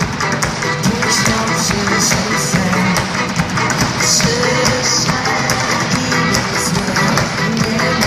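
Live unplugged band playing an instrumental passage: acoustic guitars with percussion, without vocals.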